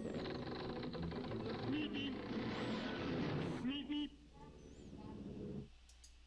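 Cartoon soundtrack sound effects: a rushing noise lasting about four seconds with a few short squeaky pitched sounds, then a fainter hiss that cuts off shortly before the end.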